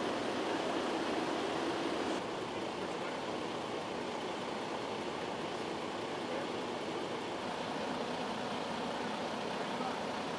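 Steady road and driving noise of a semi truck on the move on the highway, an even hiss without distinct events. It drops slightly in level about two seconds in.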